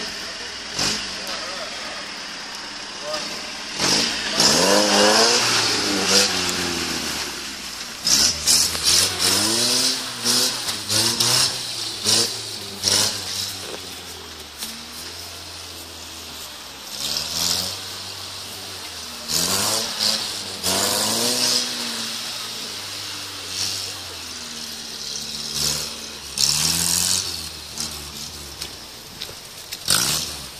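UAZ off-road vehicle's engine revving hard again and again under load as it crawls over a muddy competition obstacle, the pitch rising and falling with each burst of throttle, with sharp knocks and clatters in between.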